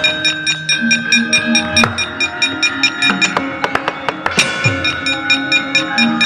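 Javanese gamelan ensemble accompanying a wayang kulit performance: bronze metallophones and gongs struck in a quick steady pulse, about five strikes a second, their ringing tones overlapping, with drum strokes among them.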